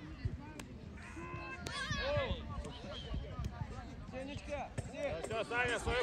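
Young footballers' high-pitched voices shouting and calling across the pitch in short cries during play, with a few sharp thuds of the ball being kicked.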